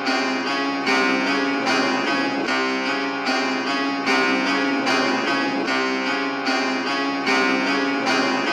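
Instrumental dark trap beat intro: a melody of short plucked-string notes in a repeating pattern, with no drums.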